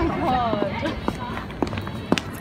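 Indistinct voices in the first second, followed by a few sharp footsteps on pavement.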